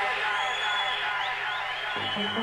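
Held synth chords of a hard trance breakdown with no kick drum, taken from a tape recording of a rave, with a short rising synth glide about the middle.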